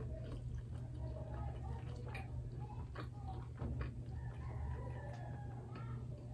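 Soft, scattered chewing clicks of someone eating steamed rice cakes close to the microphone, over a steady low hum, with a pitched animal call in the background.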